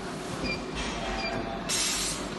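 Steady machinery noise with a short burst of hiss near the end.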